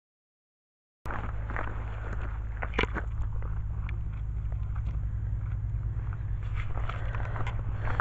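Outdoor wind noise on a handheld camera's microphone: a steady low rumble with scattered light clicks of handling, cutting in about a second in after silence.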